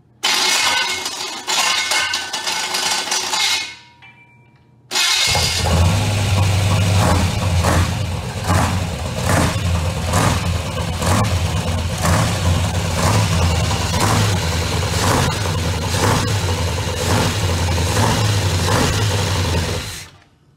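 Chevrolet 350 small-block V8 being started: a first crank of about three and a half seconds winds down without the engine catching. A second crank about five seconds in catches, and the engine then runs steadily with a regular pulse.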